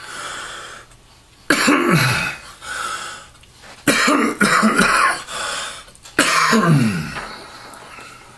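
A man coughing and clearing his throat in three bouts about two seconds apart, each a harsh burst that ends in a falling, voiced rasp.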